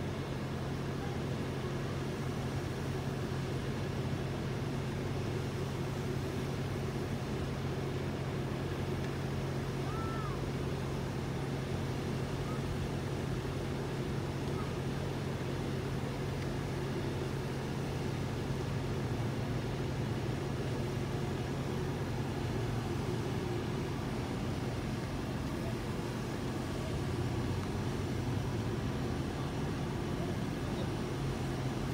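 A steady, low mechanical hum, like an engine running without change.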